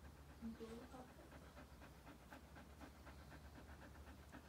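A golden retriever panting softly in a quick, even rhythm.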